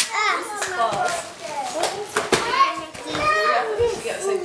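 Young children's high-pitched voices chattering and exclaiming excitedly, without clear words, with a single click a little past halfway.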